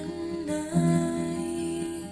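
A woman's voice humming a held, wordless melody, broken briefly about half a second in, over an acoustic guitar being strummed.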